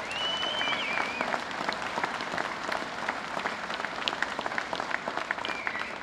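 Audience clapping steadily in applause.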